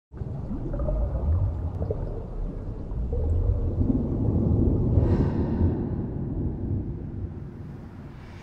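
Underwater ambience: a deep, low wash of noise with a few brief sounds gliding in pitch. It swells to a peak about five seconds in and then fades away.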